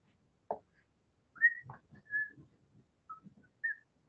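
Four short high whistled notes spread over about two and a half seconds, the first the loudest, after a single click about half a second in.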